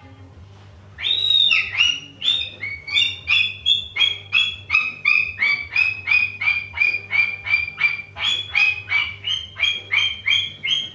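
Sulphur-crested cockatoo calling: about a second in, it starts a long run of short, sharp repeated notes, about three a second, holding nearly one pitch through the middle.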